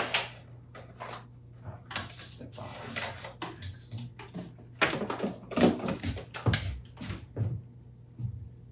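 Irregular clicks, knocks and clattering of a metal part being handled and fitted against a wooden display frame, busiest in the second half, over a steady low hum.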